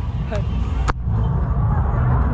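Low, steady rumble of pickup truck engines in street traffic, with a short laugh at the start and a single sharp knock about a second in.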